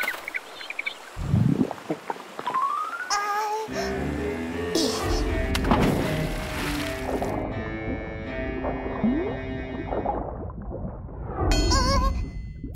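A cartoon splash about a second in as a penguin goes into the water, followed by a short rising whistle effect and then light background music.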